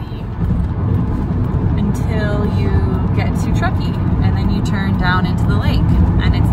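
Steady road and engine rumble inside the cabin of a car moving at highway speed, with a person's voice talking at times over it.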